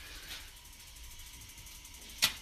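Faint, steady background noise, room tone, with no distinct event.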